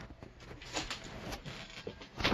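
Handling noise from a handheld phone: irregular rubs and bumps on the microphone as the phone is moved about, with fabric brushing against it.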